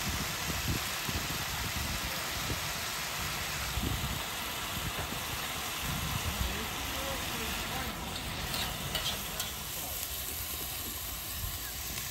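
Vegetables and meat frying in a cast-iron kazan over a wood fire, with a steady sizzle.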